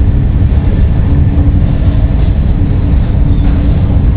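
Steady loud rumble of a Eurostar high-speed train running at speed, heard from inside the carriage, with a low steady hum running through it.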